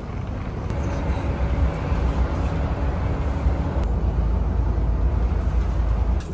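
Volvo 9600 coach's engine running as the bus pulls away, a low rumble with a steady hum that fades about three seconds in.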